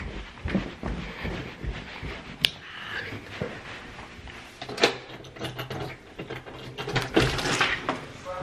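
Indoor footsteps and rustling handling noise from a hand-held phone camera while someone moves quickly through a house. There is a single sharp click about two and a half seconds in, and heavier knocks near five and seven seconds in.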